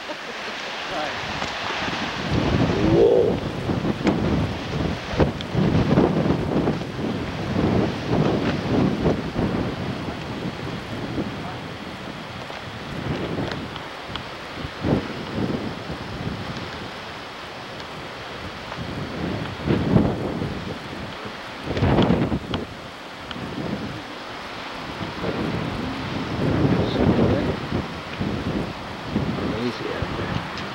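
Gusty wind buffeting the camcorder microphone, rising and falling unevenly in rumbling gusts.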